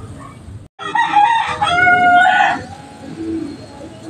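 A rooster crowing once, starting about a second in and lasting about a second and a half: a loud, pitched call that breaks partway through and then holds a steady note before it stops.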